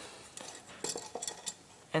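Faint, light metallic clicks and clinks of a steel foothold trap being handled, a handful of separate taps spread across the two seconds.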